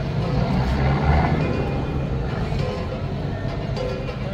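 A low steady rumble with music playing; the rumble swells about a second in.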